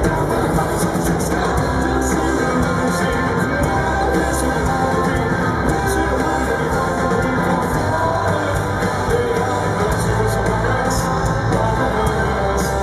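Rock band playing live: electric guitars and drums at a steady, full level.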